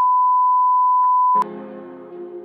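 TV test-pattern tone: one loud, steady, high beep, edited in over colour bars, that cuts off abruptly about a second and a half in. Soft music with sustained tones follows.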